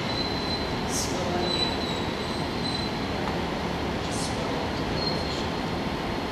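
Steady, even background noise of a large indoor hall, with a few brief faint hisses.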